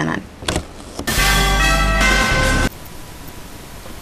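A short musical news sting: a loud, steady chord of several sustained tones with a deep low note. It starts abruptly about a second in and cuts off suddenly about a second and a half later, leaving a low hiss.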